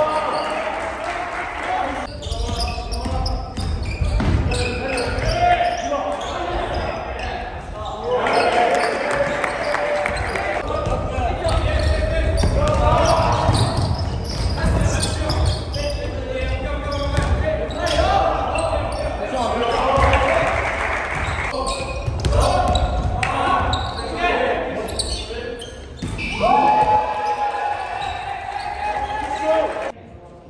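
Live sound of a basketball game on a hardwood gym court: players shouting and calling to each other, with the ball bouncing on the floor, echoing in the large hall.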